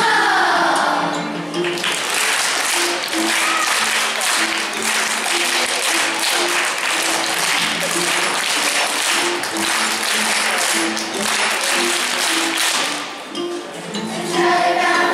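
A children's choir finishes a song, its last sung notes fading in the first second or two, followed by about ten seconds of applause and clapping. Short low instrument notes keep stepping along underneath, and the choir starts singing again at the very end.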